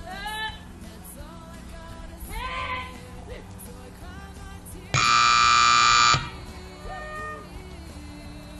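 Arena timer buzzer sounding one loud, steady electronic tone for a little over a second, about five seconds in, over quieter background music.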